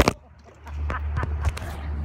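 Phone microphone handling noise as the phone is fumbled and covered by a hand. A brief hush is followed by a steady low rumble with a couple of taps.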